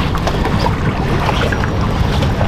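Wind buffeting the microphone in a steady low rumble, over choppy water lapping at a boat's hull.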